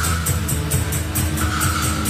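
Instrumental passage of a 1980s post-punk rock track: heavy bass and drums with a hi-hat or cymbal about four times a second, and a high held tone, likely a guitar, coming in about one and a half seconds in.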